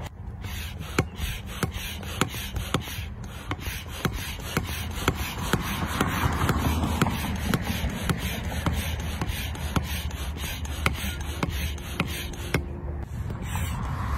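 Hand-operated stand-up barrel pump inflating an inflatable paddleboard: quick regular strokes, about three a second, each with a short click and a rush of air.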